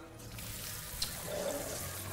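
A steady hissing rush of noise from the animated film's soundtrack, with a brief click about a second in.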